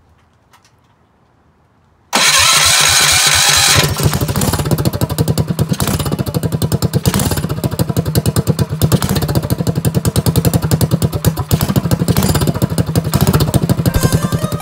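Predator 212 single-cylinder four-stroke engine on a drift trike, electric-started about two seconds in: a short burst of cranking, then the engine catches and runs with a steady rapid beat.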